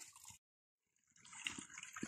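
Faint running water of a small stream, broken by about a second of dead silence near the start.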